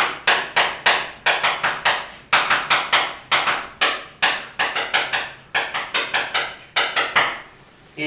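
Chalk writing on a blackboard: a quick run of sharp taps, one per stroke of the characters, three or four a second, stopping about seven seconds in.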